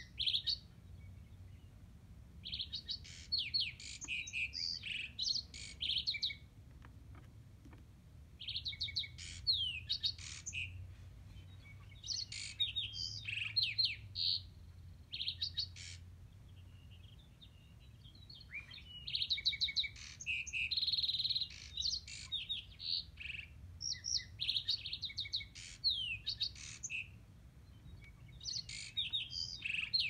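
Springtime songbird chorus: rapid chirps, trills and quick sweeping whistles in bouts a few seconds long, with short pauses between them.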